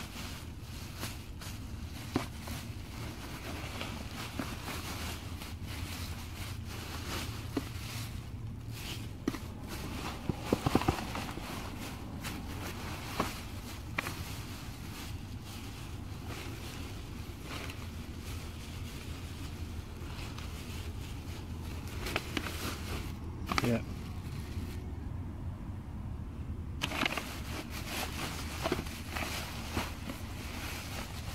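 Thin plastic trash bags crinkling and rustling as hands dig through them, with irregular sharp crackles and a louder cluster about a third of the way in, over a steady low rumble.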